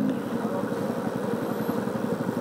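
Motorcycle engine running steadily at low revs, heard from the rider's own bike while creeping along in slow traffic.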